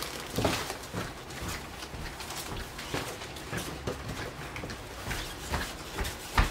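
Rustling, footsteps and small knocks of a person coming in through a house's front door, with a sharper knock about five and a half seconds in.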